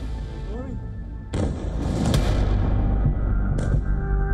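A missile strike's explosion going off suddenly about a second in, its rumble carrying on, with a second sharp blast near the end; background music runs underneath.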